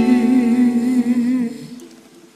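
A singing voice holding one long note with vibrato at the end of a sung line, over a ringing chord; both fade away about a second and a half in.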